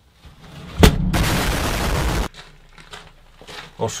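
A loud edited-in noise effect: a sharp crack about a second in, then about a second and a half of harsh, even noise that cuts off abruptly.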